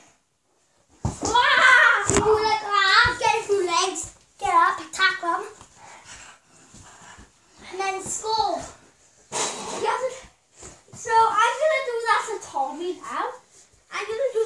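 Young children talking, with a couple of sharp knocks about one and two seconds in.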